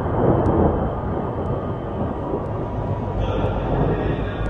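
A loud, dense, rumbling roar of ominous film sound design, with faint ticks about once a second. It brightens slightly near the end.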